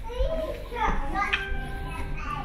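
High-pitched children's voices talking and calling out, with no other sound standing out.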